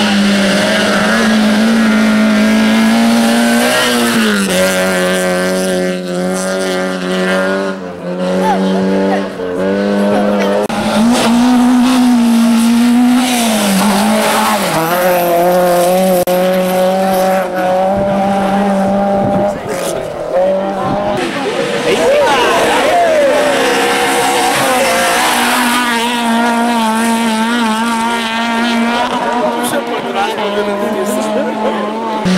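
Rally car engines at high revs on a special stage: a loud, held engine note that steps up and down in pitch several times as cars come through.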